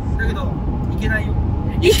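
Steady low rumble of a car's engine and road noise inside the cabin, with faint snatches of talk over it and a voice coming in near the end.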